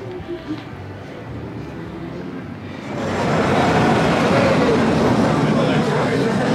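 Faint music at first, then about three seconds in the loud, steady rolling noise of the Colorado Adventure mine-train roller coaster running on its track as it pulls out of the station.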